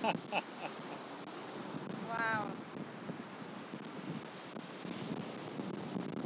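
Ocean surf breaking on a beach, mixed with wind buffeting the microphone, an even steady wash of noise. A brief voice sound comes about two seconds in.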